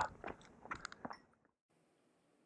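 A few faint, short clicks and scuffs of tennis play on a hard court, dying away to near silence just over a second in.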